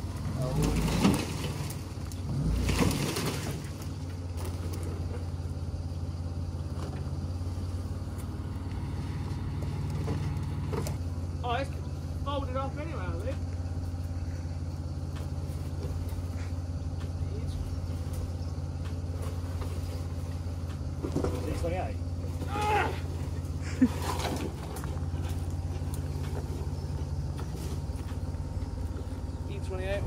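An engine idling steadily under the whole scene, with two loud bursts of crunching and scraping about one and three seconds in as the overgrown car is pulled out through dead brush. Faint voices come now and then.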